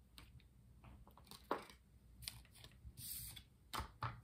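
Tarot cards and their box being handled as a card is drawn: scattered faint taps, clicks and rustles, the sharpest near the end.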